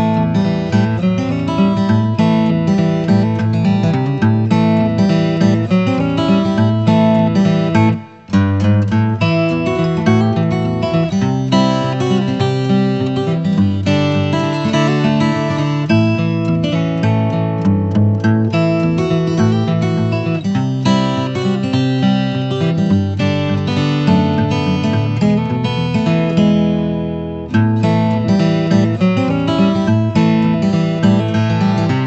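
Background music led by a strummed acoustic guitar, with steady strokes. It breaks off for a moment about eight seconds in and fades briefly near the end before picking up again.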